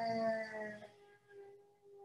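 A drawn-out pitched whine whose pitch slowly falls, fading about a second in and followed by a fainter steady tone.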